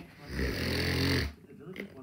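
A loud, low, rasping snore-like breath from a person, lasting about a second.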